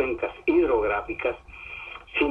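Speech only: a man talking in Spanish over a telephone line, with a steady low hum underneath.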